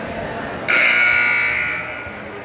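Gymnasium scoreboard buzzer sounding one steady, harsh blast of about a second, starting abruptly just under a second in.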